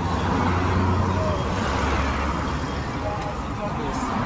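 Road traffic with cars passing close by, a low engine rumble and tyre noise that swells in the first second and then eases off.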